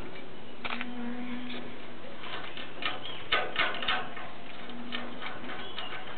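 Scattered light metallic clicks and taps, a small cluster of them in the middle, as bolts are worked by hand on the steel guard bar of a hydraulic baling press, over a steady background hiss.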